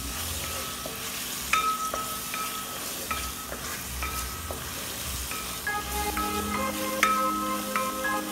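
Sliced onions, green chillies and curry leaves sizzling in hot oil in an aluminium pot, stirred with a wooden spatula.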